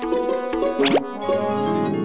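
Playful cartoon music with two quick upward-sliding sound effects, one at the start and another about a second in, followed by a steadily rising run of notes.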